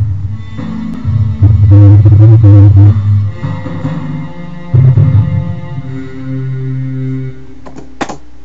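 Two MIDI tracks played back together through the Edirol HQ Orchestral software synthesizer: sampled instruments sounding a low part of held notes under a higher line. The notes stop near the end.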